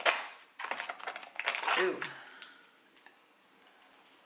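Plastic jar of body scrub being opened by hand: a sharp knock at the start, then about a second of quick crinkling and clicking as the lid comes off and the foil seal is peeled back.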